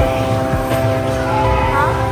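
Games arcade din: electronic tones and jingles from arcade machines over a hubbub of voices, with a rising electronic tone near the end.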